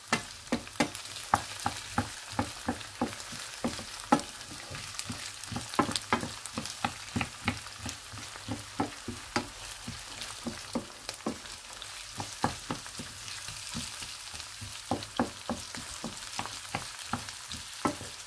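Dry rice and chopped onion sizzling in hot oil in a frying pan, stirred with a wooden spoon that knocks and scrapes against the pan several times a second.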